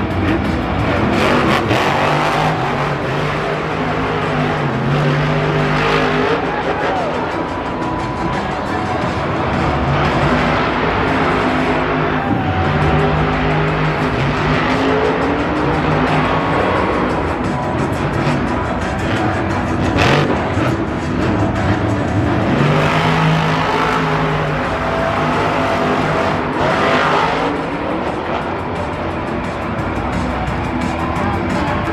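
Monster truck's supercharged V8 revving hard and easing off again and again during a freestyle run, over loud stadium PA music. A single sharp bang cuts through about twenty seconds in.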